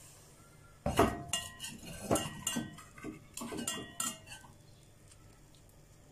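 Clattering of a frying pan and utensils on a stove: a run of knocks and clinks, with a wooden spoon against the pan among them, starting about a second in and dying away after about three and a half seconds.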